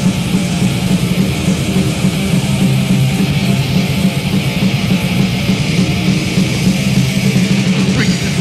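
Heavy metal music from a 1986 thrash demo tape, with no vocals: distorted electric guitars riffing over a dense, unbroken drum beat at a steady loud level.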